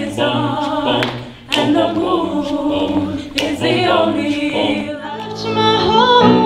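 A mixed-voice student vocal ensemble singing in harmony without accompaniment, in phrases with a short break about a second and a half in.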